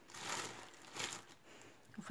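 Soft rustling of a crochet piece and cotton twine being handled, once at the start and again briefly about a second in.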